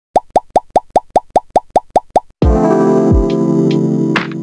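A rapid string of eleven identical plop sound effects, each a quick upward bloop, about five a second. About two and a half seconds in they give way to a synthesizer intro jingle with a deep bass swoop.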